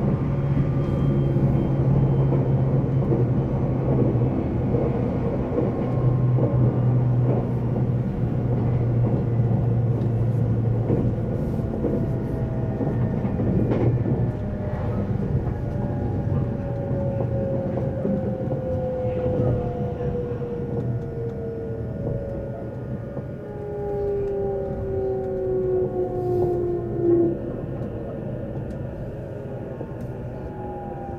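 Running noise inside an E353 series electric limited express motor car: a steady rumble of wheels on rail with a low hum. From about halfway, a whine from the traction motors falls slowly in pitch and the noise eases as the train brakes for a station stop.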